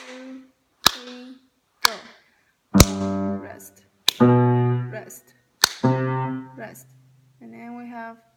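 Low piano notes, separate and slow at about one a second, played with the left hand on C and lower G. Some notes are struck harder and ring longer, as accented notes in a slow, heavy beginner piece.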